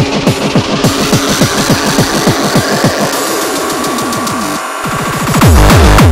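Electronic dance music: a run of fast, pitch-dropping kick drums under a slowly rising sweep. The kicks thin out and break off briefly near the end, then the music returns much louder with a steady, heavy bass.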